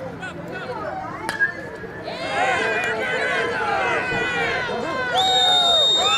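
A baseball bat cracks against the ball about a second and a half in, a home-run hit. Spectators then shout and cheer, with one long high shout near the end.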